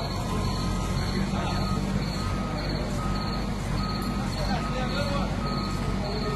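Heavy forklift's backup alarm beeping at a steady pace, a little under one beep a second, over the machine's engine running. The beeping starts about a second in.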